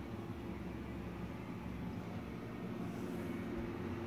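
Steady low background hum of a room, with no distinct events.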